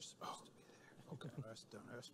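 Faint, low voices talking quietly, with speech-like murmur from about a second in and a brief hiss at the very start.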